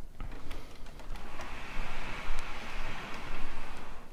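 Rustling, handling noise: a few small knocks, then a steady hiss that swells about a second in and holds.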